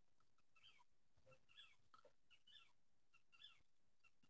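Near silence, with a few faint, short chirps scattered through it.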